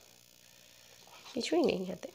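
Quiet, then near the end a beagle's short whine that falls steeply in pitch.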